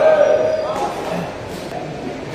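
A man's loud, drawn-out shout in the first half-second or so, followed by mixed spectators' voices in a large hall.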